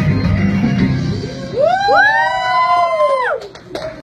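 A song's backing music stops about a second and a half in. Two overlapping high whooping cries from the audience follow, each rising, held for more than a second, and falling away together near the end.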